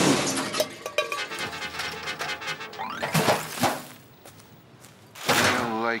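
Cartoon sound effects over music: a loud whoosh right at the start, then a crash of something landing in a trash can near the end.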